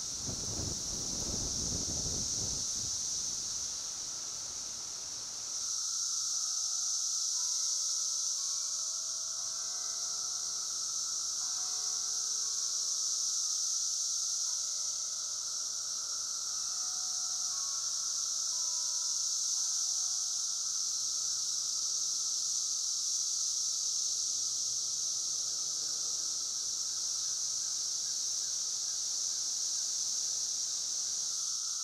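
Chorus of Brood X periodical cicadas: a steady, high-pitched drone with a weaker, lower hum beneath it, growing louder about five seconds in. There is a low rumble in the first few seconds, and faint short tones come and go in the middle.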